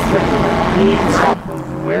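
Passenger train running, heard from inside the carriage: a loud low rumble with voices over it, which stops about one and a half seconds in.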